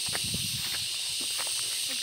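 A steady high-pitched insect chorus shrills without a break. Footsteps crunch and click on dry grass and loose stones, a scatter of short steps.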